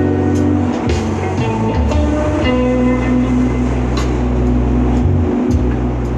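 Guitar music played live inside a moving subway car: plucked notes and held tones over a deep bass line that changes note every second or so, with the train running underneath.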